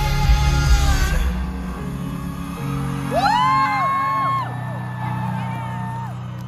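Live band music through a concert PA: the full band with drums plays for about a second and then the drums drop out, leaving held bass and chord notes. Through the middle a single voice glides up and holds a high note.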